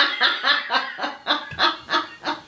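A person laughing in a high, cackling run of short 'ha' bursts, about four a second, spacing out and tailing off near the end.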